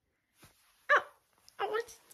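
Two short, high-pitched voice sounds about half a second apart, starting about a second in: first a brief rising squeal, then a few quick laugh-like syllables.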